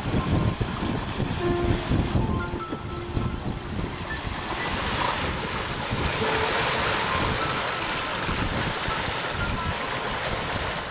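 Background music over water rushing along a sailboat's hull, the rush growing louder from about halfway through. Wind buffets the microphone in the first few seconds.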